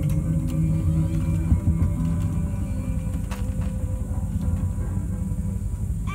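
Ambient improvised music: a low drone with one long held tone that sags slightly in pitch, over a steady rumble.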